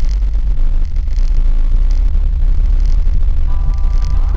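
Steady deep rumble of a car's cabin on the move, under background music with a faint repeating beat about every second.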